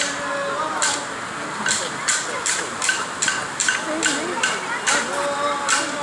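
Clapsticks struck in a steady beat, about two to three sharp clicks a second, over crowd voices, with a held sung voice at the start and again near the end.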